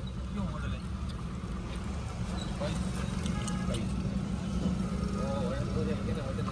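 Mahindra Bolero SLX turbo-diesel engine idling, a steady low drone heard from inside the cabin.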